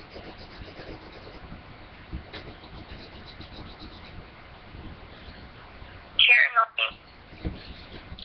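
Faint, steady hiss of an open phone call played on speaker, then about six seconds in a brief, loud, high-pitched voice whose pitch falls sharply.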